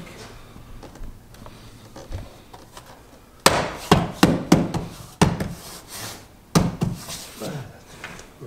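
Hand slapping a car's plastic door-sill trim panel into place, knocking its clips home. After a quiet start with light handling, a run of sharp smacks comes from about halfway in, roughly two a second.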